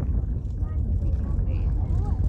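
Steady low rumble of a car driving over a sandy dirt track, heard from inside the car.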